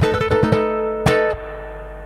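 Closing bars of a blues arrangement, with no singing. A few notes sound over low drum hits, then a final accented chord is struck about a second in and left ringing as it fades.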